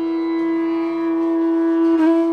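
Bansuri, the Indian bamboo flute, holding one long steady note in Hindustani classical music, with a breathy accent near the end as the next phrase begins, over a steady drone.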